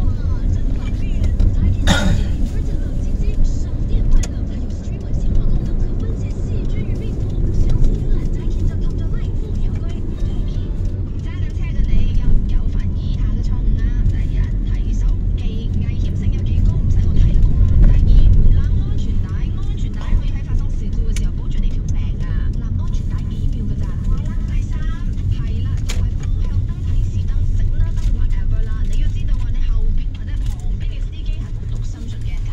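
Engine and road noise heard from inside a moving car's cabin: a steady low rumble, with a sharp knock about two seconds in.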